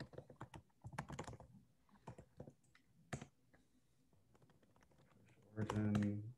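Typing on a computer keyboard: a quick, uneven run of key clicks for about the first three seconds, then it stops. A short voice sound comes near the end.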